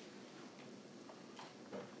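Faint meeting-room background with a few light, sharp clicks and taps, the clearest about one and a half seconds in.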